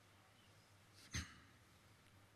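Near silence: quiet room tone with a faint steady hum, broken once about a second in by a short, sharp sound.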